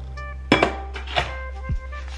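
Stainless steel mixing bowl knocking against a stand mixer, two clanks with a short ring about half a second and just over a second in, over background music with a steady beat.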